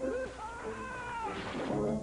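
A man's long, high-pitched wailing scream whose pitch rises and then falls, over film-trailer music.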